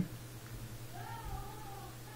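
A faint cat meow in the background: one drawn-out call of about a second, starting about a second in, rising in pitch and then levelling off.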